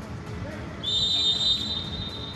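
A referee's whistle blown in one long, steady, high note, starting about a second in and still sounding at the end, over the low hum of arena noise.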